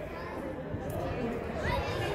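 Indistinct chatter of spectators and players echoing in a large indoor sports hall, with no clear words.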